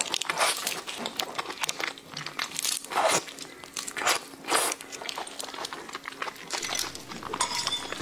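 Raw red shrimp being eaten close to the microphone: the shell cracks and tears as the fingers pull it apart, with wet sucking at the head, in irregular short bursts.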